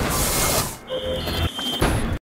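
Electronic sound effects of an animated DVD menu transition. A loud hiss-like rush fades out just under a second in. A steady high electronic tone follows for about a second, with a short lower beep and a click near the end.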